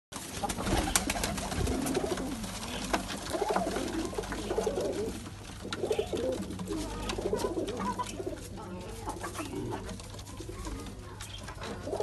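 Several domestic pigeons cooing in a loft, their low wavering coos overlapping and repeating.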